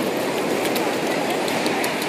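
Shallow ocean surf washing in over the sand, a steady rushing hiss with faint scattered ticks.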